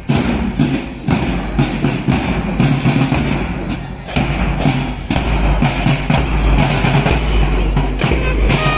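Marching drum band of bass drums and side drums playing a steady march beat, about two strokes a second.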